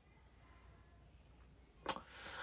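Quiet room tone, then one short, sharp click near the end.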